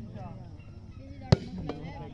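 A single sharp smack of a hand striking a plastic volleyball about a second and a half in, with a fainter knock just after, over people's voices shouting and talking in the background.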